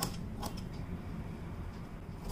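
Fabric scissors snipping through layered cotton to trim the excess around a quilt block: a sharp snip at the start and another about half a second in, then fainter blade clicks.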